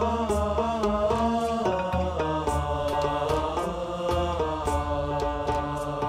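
Background score music: a sustained chant-like vocal melody over a steady percussive beat.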